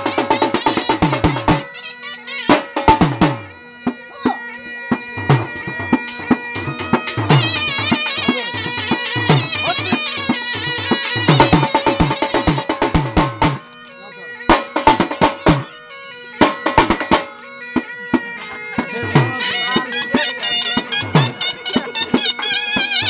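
Dhol drum beaten in fast, dense strokes under a wind-instrument melody played over a steady drone. The drum drops out briefly a few times, about two seconds in, around fourteen seconds and again near eighteen, leaving the melody and drone on their own.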